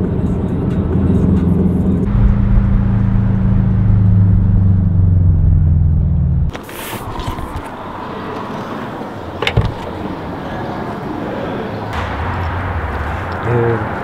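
Subaru Impreza WRX STI's turbocharged flat-four engine droning steadily inside the cabin on the road, its pitch easing down slightly over a few seconds. The drone cuts off about six and a half seconds in, leaving a quieter outdoor hum with a short rush of noise right after the cut and a sharp click near the tenth second.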